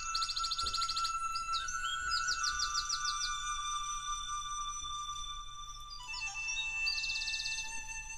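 Wake Voice alarm app ringing on an iPhone: a gentle wake-up tune of soft sustained tones with birdsong chirps and rapid trills over it, three trill bursts in all.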